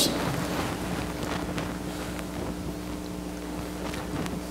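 Steady room tone in a pause between spoken lines: a low, even hum with a faint hiss and a few faint ticks. The last word fades out just at the start.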